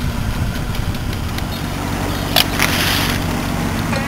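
Small boat's motor running steadily, a low even drone. A sharp click and a short hiss come about two and a half seconds in.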